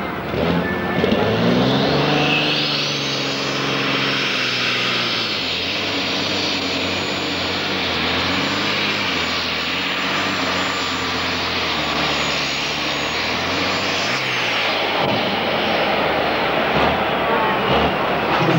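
Modified pulling tractor's DAF diesel engine revving up as it launches and runs under full load pulling the sled, with a high turbo whine that climbs in the first few seconds, holds, and drops away about 14 seconds in as the pull ends.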